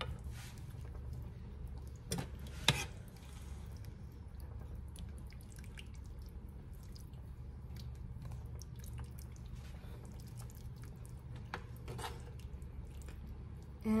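A large spoon stirring a soupy tomato-sauce stew of ground beef and potatoes in a cast-iron skillet: soft wet sloshing and squishing, with sharp clicks of the spoon against the pan about two seconds in and again near the end. A steady low hum runs underneath.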